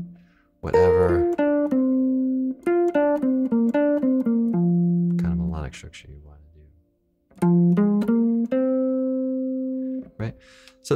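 Clean electric jazz guitar playing a single-note improvised line, short runs of notes each settling on a held note, with a brief silent gap about seven seconds in. The line strings melodic structures together over the chord changes.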